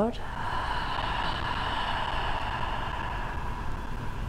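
A long, steady audible exhale through the mouth: a deep sigh of breath let out slowly after a full inhale.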